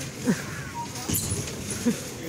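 Busy supermarket background noise with brief indistinct voices of shoppers: a short falling voice sound about a third of a second in and another near the end.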